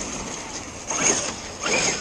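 Losi DBXL-E 1/5-scale electric RC buggy on 8S power driving off over rough ground. Its brushless motor whines and its tyres scrub in two bursts of throttle, one about a second in and one near the end.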